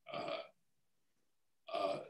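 A man's two short hesitation sounds, "uh", about a second and a half apart, with dead silence between.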